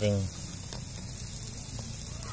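Marinated chicken pieces sizzling steadily on a wire grill over hot charcoal, with a few faint pops.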